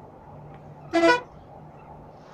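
A Volvo B9R coach's horn gives one short, loud toot about a second in, over the steady drone of the coach's engine and road noise heard from inside the cab.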